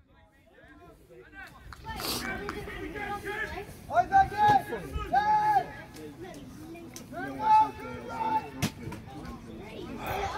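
Scattered shouts and calls from players and spectators at an outdoor football match, with faint background chatter. It starts nearly quiet, and the loudest calls come around the middle and again a little later. A couple of sharp knocks stand out among the voices.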